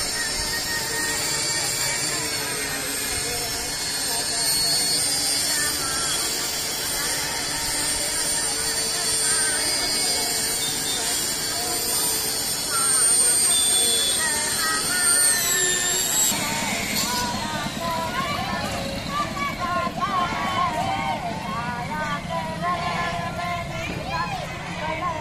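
Procession street sound: for the first part a steady mix of held tones and a high whine, which glides down and stops about 16 seconds in; after that, many people's voices together, rising and falling.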